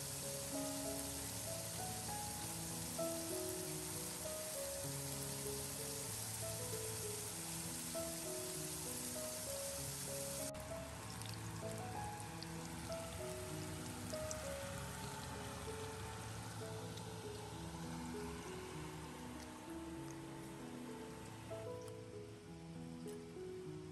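Instrumental background music over the sizzle of spring rolls frying in hot oil in a stainless steel pan. The sizzle cuts off suddenly about halfway through, leaving the music with a fainter hiss.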